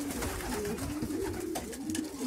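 Several racing pigeons cooing in a loft, low overlapping coos that swell and fall, with a couple of light clicks in the second half.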